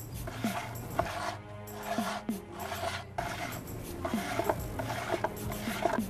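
Playing cards being shuffled and rubbed against a small wooden stool, in repeated brushing strokes about once a second, over background music.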